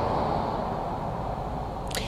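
Steady low background noise from an open outdoor microphone, fading slightly, with a short intake of breath near the end.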